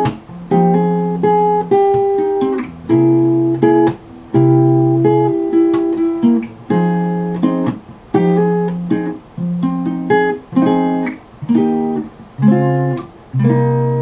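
Acoustic guitar playing a slow chord progression: one chord after another, most of them cut short before the next, with about a dozen changes in all.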